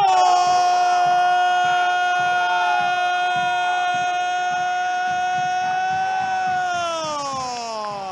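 Football commentator's drawn-out goal shout, "¡Gooool!", held on one high pitch for about seven seconds, then falling in pitch near the end.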